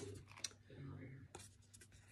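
Near silence with a few faint clicks and light rubbing: small handling of oracle cards on the table, over a low steady hum.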